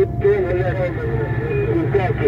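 People talking inside a vehicle cab over the steady low hum of its running engine.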